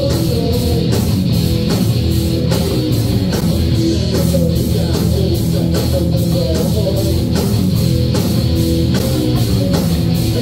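Heavy metal band playing live: distorted electric guitars over a steady drum beat, in an instrumental passage with no singing.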